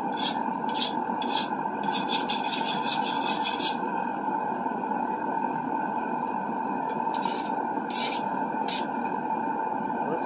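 Hand file stroked across a quenched steel seax blade made from an old farrier's rasp, held in a vise, as a file test of whether the blade hardened. There are a few separate strokes, then a quick run of short strokes about two to four seconds in, then three more strokes near the end. Under them the gas forge's burner runs with a steady roar.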